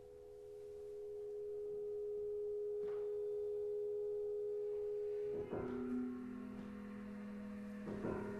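Contemporary chamber ensemble music: two close, steady pure tones swell slowly, then a sudden attack a little after five seconds in brings in lower held tones.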